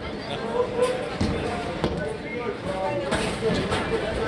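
Bowling alley ambience: indistinct chatter and laughter with a few scattered knocks of bowling balls and pins.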